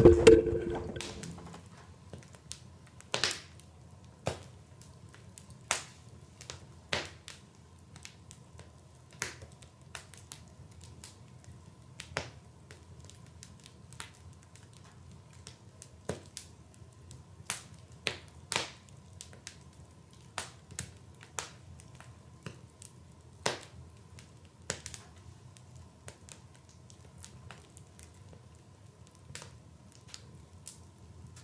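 A man's cry dies away in the first second, then sparse, irregular sharp crackles and clicks, roughly one a second, sound over a faint steady low hum.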